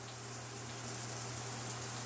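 Steady background hiss with a faint low hum underneath, with no distinct event.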